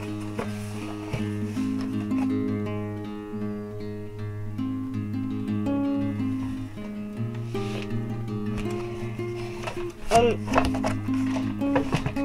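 Instrumental background music, a guitar-like track of held notes in a steady repeating pattern.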